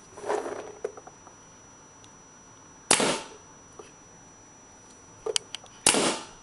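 MacDev Clone paintball marker firing two single shots about three seconds apart, each a sharp pop with a short hiss of air, with a couple of light clicks shortly before the second shot. The marker is brand new and still breaking in.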